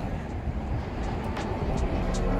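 Steady city street noise with a low traffic rumble, picked up by a phone carried along a sidewalk, with a couple of faint clicks near the end.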